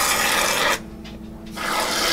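Spatula scraping whipped cream off into ceramic mugs: two scraping strokes of about a second each, the second starting about one and a half seconds in.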